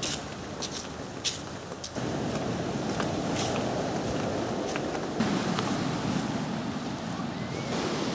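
Ocean surf washing, with wind blowing on the microphone and a few faint clicks; the noise steps up louder about two seconds in.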